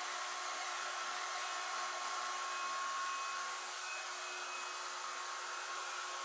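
Andrew Barton Shine Volumiser spinning hot-air brush running with its barrel rotating: a steady whir of blown air with a faint constant whine from the motor.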